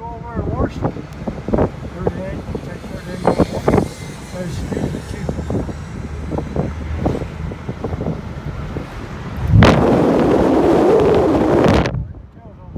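Wind and road noise inside a moving car driven with the windows or top down, with a loud rush of wind hitting the microphone for about two seconds near the end.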